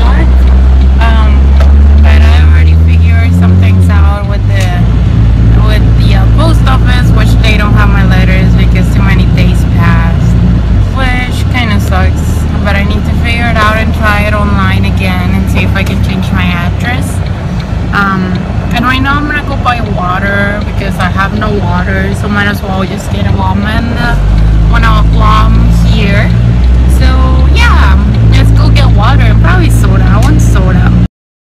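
A song with a deep, stepping bass line and a singing voice, played loud inside a moving car's cabin over road and wind noise.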